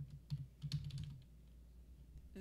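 Computer keyboard typing: a quick run of keystrokes in the first second or so, then it stops.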